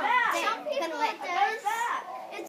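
Several children's high voices shouting and exclaiming excitedly over one another, with no clear words.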